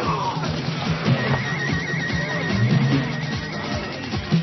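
Film score music with a steady low backing and scattered short thuds. A high, evenly warbling tone runs through the middle.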